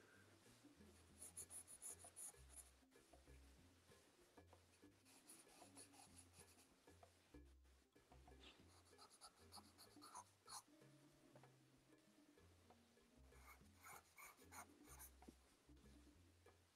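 Faint pencil scratching on sketchbook paper in runs of quick strokes, about a second in, around five and ten seconds in, and again near the end.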